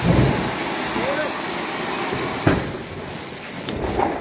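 A flowerpot (anar) fountain firework spraying sparks with a steady, dense hiss. Two louder cracks come through it, one right at the start and one about two and a half seconds in.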